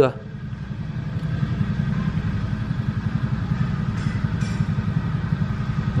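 Steady low rumble with a fast, even pulse, like a small engine idling, with two faint clicks about four seconds in.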